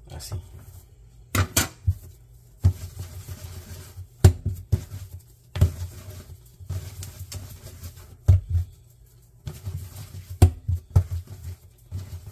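Bread dough being cut with a plastic bench scraper and rounded into balls by hand on a countertop: a string of irregular knocks and thumps from the scraper and the dough against the counter, with soft rubbing and kneading noise between them.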